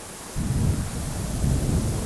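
Low, irregular rumble picked up by a handheld microphone, starting about a third of a second in, with no speech over it.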